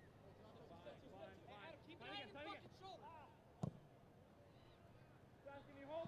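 Faint shouting of players on a football pitch, heard under the open-air ambience of the ground, with one sharp thud about three and a half seconds in.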